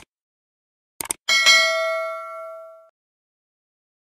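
Subscribe-button animation sound effect: two quick mouse clicks about a second in, then a notification bell ding that rings and fades out over about a second and a half.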